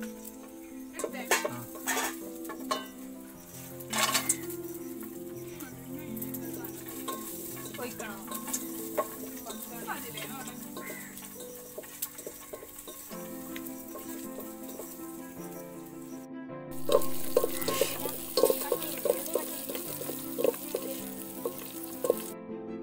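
A metal ladle stirring and knocking in an aluminium pot, with a few sharp clicks early on. About seventeen seconds in, a loud sizzle with crackles takes over: cashews, sliced onion and raisins frying in ghee for ghee rice. Soft background music runs underneath.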